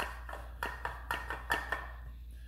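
Copper fence post cap clicking and rattling against a wooden post as it is rocked, in about a dozen quick, uneven taps. The cap is a full 4-inch cap sitting loose on a nominal 3½-inch 4x4 post that is too small for it.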